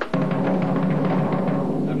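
Fast roll on a floor tom played with rebound double strokes: a rapid, continuous run of strokes over the drum's low ring, stopping near the end. The strokes come out not very defined.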